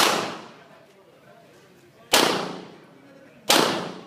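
Handgun shots, three in about three and a half seconds, unevenly spaced. Each is a sharp crack with a short echo that dies away.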